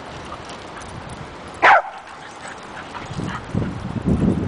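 A dog gives one short, high yelp that falls in pitch, about halfway through, during rough play with other dogs. Near the end, a low rustling noise builds.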